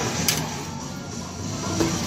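Claw machine's gantry motor whirring as the claw travels into position over the plush toys, with background music under it. There is a short click about a third of a second in.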